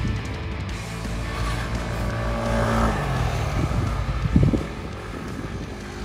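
Yamaha Aerox 155 scooter's single-cylinder engine running on a race track as it passes, its note falling about three seconds in and loudest a little past four seconds, over background music with guitar.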